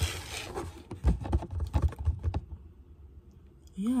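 Handling noise on a phone held at arm's length: a quick irregular run of taps, clicks and low thuds near its microphone that stops about two and a half seconds in.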